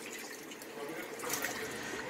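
Water running and sloshing in the tub of a top-loading washing machine with a central agitator, a fairly quiet steady rush.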